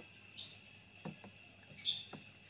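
A small bird chirps twice, two short high falling calls about a second and a half apart, over a faint steady high hum. Faint light taps from a plastic spoon stirring in a plastic tub are heard between the calls.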